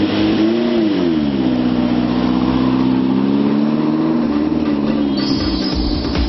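Mastretta MXT sports car engine revving up and back down as the car pulls away, then running at steady revs with a slight rise in pitch. Music comes in near the end.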